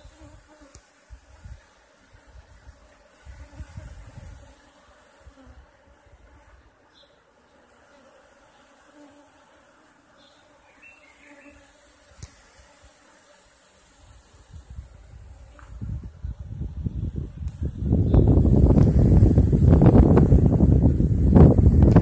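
Honeybees flying around a swarm bait hive, a faint steady buzzing hum. Over the last few seconds a loud low rumbling noise on the microphone builds up and drowns out the buzzing.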